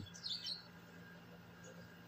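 A brief faint high chirp about a quarter second in, over a quiet, steady low hum.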